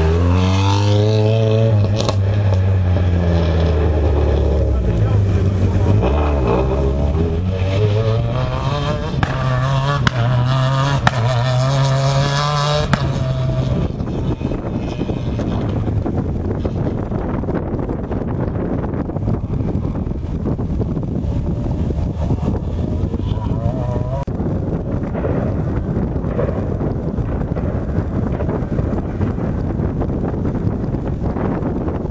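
Renault Clio R3 rally car's engine revving hard as it accelerates past close by, its pitch rising and falling through quick gear changes. About 13 seconds in it drops away to a faint distant engine under wind noise as the car drives off.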